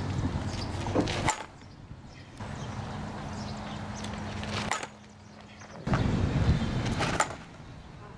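A softball bat hitting a ball off a batting tee, three sharp hits about three seconds apart.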